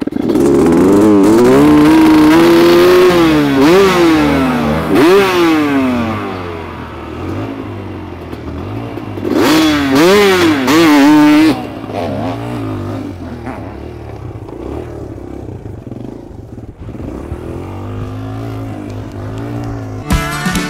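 Dirt bike engines revved up and down in a run of blips, then a second short burst of revving about halfway through, and afterwards running at a lower, steadier idle.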